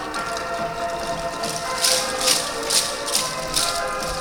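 Yosakoi dance music playing over loudspeakers, with the dancers' wooden naruko clappers clacking together in time, four sharp clacks in the second half.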